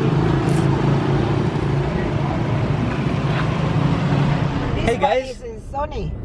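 Street traffic noise with a motorbike engine running close by, a steady low hum. It stops abruptly near the end.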